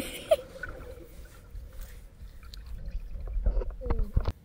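Underwater sound picked up by a submerged camera: a muffled low rumble of moving water with scattered small clicks and gurgles, growing louder near the end.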